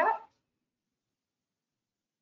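The end of a spoken question, the word "that?", cut off a quarter second in, then dead silence.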